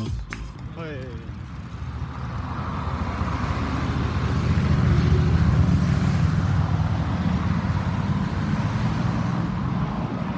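Van engine and tyre noise close by, building up over a few seconds as the van comes slowly nearer, then holding steady with a low rumble.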